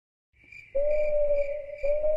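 Cartoon night-ambience sound effect: crickets chirping in an even pulse of about three chirps a second, under a steady eerie whistle-like tone. It starts after a short silence, and the tone breaks briefly near the end and comes back.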